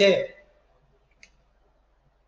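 A man's spoken word trails off, then near silence broken by one short, faint click a little after a second in.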